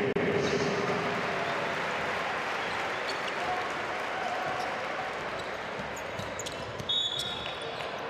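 Basketball game in a large arena: a ball dribbled on the hardwood court over steady crowd noise, with short knocks and sneaker sounds picking up late, including one brief high squeak near the end.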